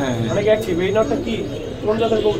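Domestic pigeons cooing in their cages, with voices talking in the background.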